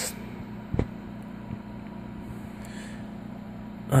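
Steady low room hum with a constant tone, broken by one soft knock just before a second in. About two and a half seconds in come faint scratches of a dry-erase marker on a whiteboard.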